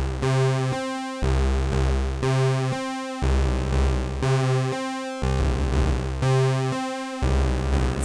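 Novation Circuit Mono Station analogue synthesizer playing a sequenced bass pattern that repeats about every two seconds. The LFO sweeps the pulse wave's width, and the modulation depth is being turned up toward full, so the tone shifts while the pattern plays.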